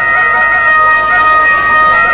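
A hand-held end-blown folk pipe playing two steady, held high notes over a softer wavering lower line.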